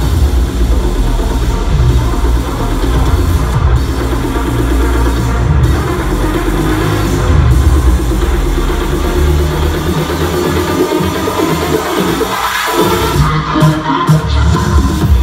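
Future house DJ mix played loud in a club, with heavy bass throughout. The bass thins out about ten seconds in and drops back in just before the end.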